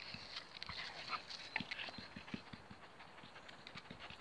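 A Labrador's claws and paws making light, irregular taps on concrete paving slabs as it steps about and walks off.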